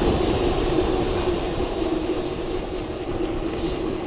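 Wind rushing over the microphone's furry windscreen as an e-bike rolls at about 60 km/h, a steady rush with a constant low hum running under it.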